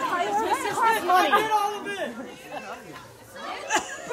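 Several voices talking over one another in excited chatter, louder in the first couple of seconds and then dropping off.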